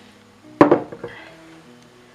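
A glass jar of vinegar set down on the countertop with a single clunk about half a second in, ringing briefly, over faint background music.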